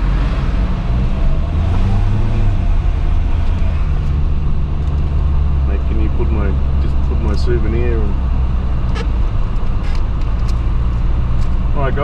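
Car engine pulling away and accelerating, its note rising over the first couple of seconds and then holding steady, with tyre and wind noise coming in through the open driver's window. A faint voice is heard about six to eight seconds in.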